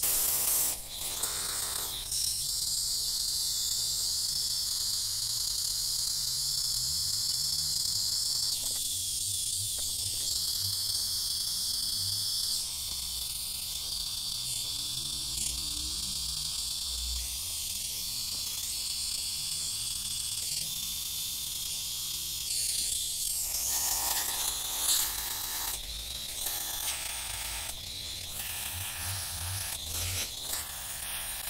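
Garden hose spray nozzle running a steady jet of water, rinsing cleaning solution out of a cotton air filter and splashing onto concrete.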